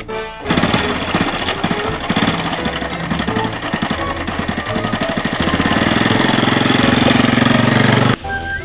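Honda underbone motorcycle's single-cylinder four-stroke engine kick-started, catching about half a second in and running with a rapid, even chugging beat that quickens and grows louder toward the end as it is revved.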